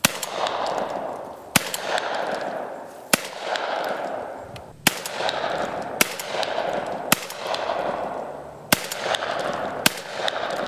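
Tomahawk Model 410 .410-bore shotgun fired eight times in quick succession, about one to one and a half seconds apart. Each sharp report is followed by about a second of echo.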